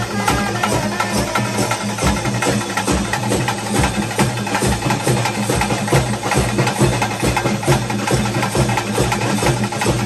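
Traditional ritual drum ensemble playing a fast, dense, unbroken rhythm, with sharp clacking strikes over the drumming.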